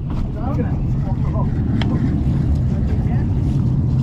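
Boat engine running with a steady low hum. A brief quiet voice comes in near the start, and there is a single sharp click a little under two seconds in.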